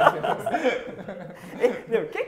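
Men laughing and chuckling in short, uneven bursts.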